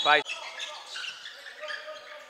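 A basketball being dribbled on a hardwood gym court during play, heard under the hall's general game noise.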